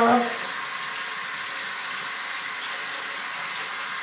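Bathroom sink tap running steadily into the basin.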